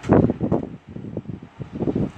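Wind buffeting a phone's microphone in irregular rough gusts, loudest just after the start and again near the end.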